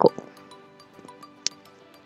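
Soft background music of steady held notes, with one sharp click about one and a half seconds in.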